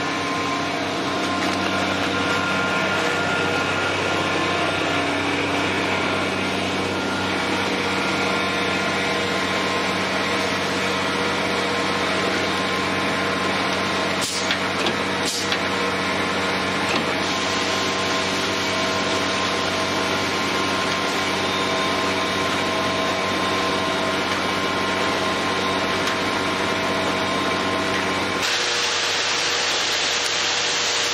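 Diesel engine of the concrete truck running steadily at high revs while concrete is discharged, with two short knocks around the middle. Near the end the low engine note drops away and a steady hiss takes over.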